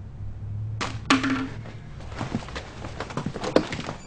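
Two sharp knocks about a second in, the second the loudest, then a run of light, irregular taps and clicks.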